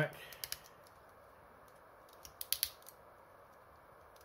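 Hard plastic parts of a Transformers action figure clicking as they are flipped and folded into place by hand. There is a short run of clicks just after the start and another a little past the middle.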